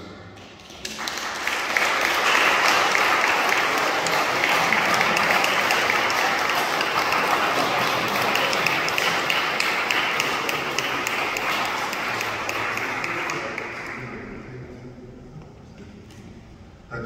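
Congregation applauding, starting about a second in and dying away near the end.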